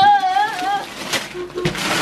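A child shouting "Scooter!" in a high, excited voice, followed by a few short rustles and knocks from Christmas wrapping paper and the scooter's cardboard box being handled.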